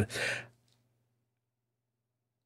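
A man's short sigh, an outward breath lasting about half a second, followed by near silence.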